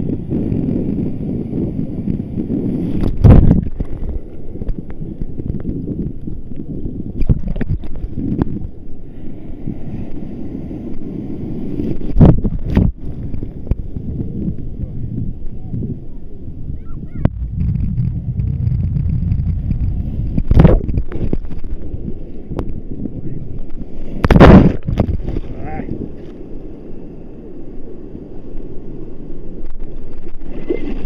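Sea water sloshing and wind buffeting the microphone in a steady low rumble, broken by four loud, sudden splashes or knocks spread through the stretch.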